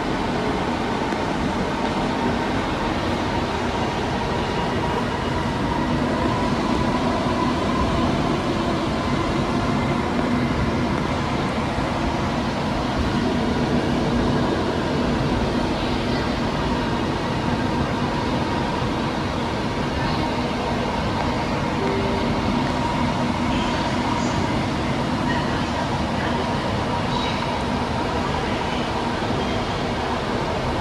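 Ahmedabad Metro train running, heard from inside the carriage: a steady rumble of wheels on the track with an even hum over it, unchanging throughout.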